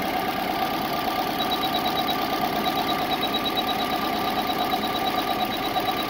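2004 Subaru STI's turbocharged 2.5-litre flat-four boxer engine idling with a misfire on cylinder two, caused by an ignition coil that is not firing.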